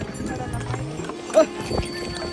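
Pony hooves clip-clopping in an uneven beat, with one sharper, louder knock past halfway.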